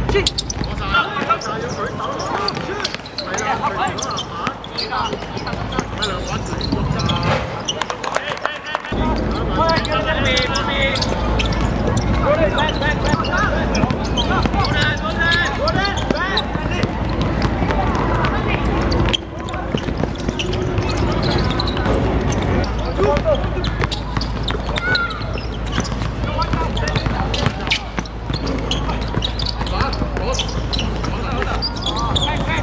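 Basketball game on an outdoor court: the ball bouncing in repeated sharp knocks on the hard surface, over a steady mix of players and onlookers calling out.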